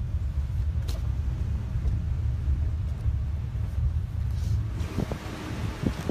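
Steady low rumble of a land train driving along a road, heard from on board one of its carriages. Wind noise picks up near the end.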